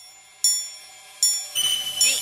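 Bell-like chimes struck twice, each ringing out and fading, with music coming in near the end.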